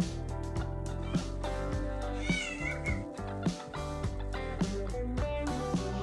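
Background music with guitar and a steady beat; about two seconds in, a brief high wavering cry rises over it.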